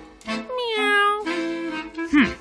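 A cartoon cat's single meow, falling in pitch and lasting under a second, over light background music.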